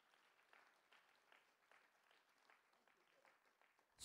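Very faint, scattered audience applause, barely above near silence.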